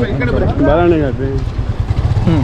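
A man talking at close range over a constant low rumble.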